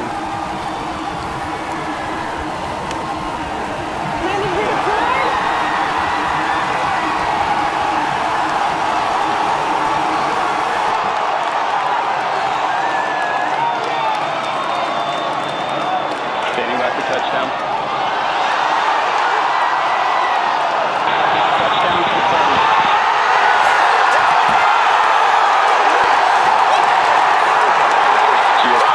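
A crowd of many people cheering, whooping and shouting, with no single voice standing out. It swells louder about four seconds in and again near the end.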